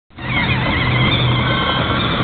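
Battery-powered ride-on toy car driving along, its electric motor giving a steady whine over a low hum.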